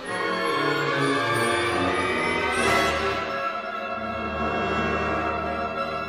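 A symphonic wind band plays a dense passage of many sustained pitched lines. It swells to a bright peak a little under halfway through, over low held bass notes that enter about a second in.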